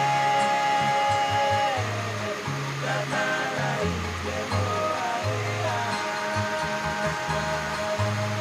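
Music with a melody and a changing bass line, playing over the steady hiss of heavy rain.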